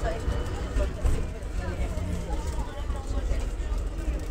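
Cabin noise of a moving 1982 Volvo B10R-55 city bus: a steady low rumble from its rear-mounted diesel engine and the road, with passengers talking over it.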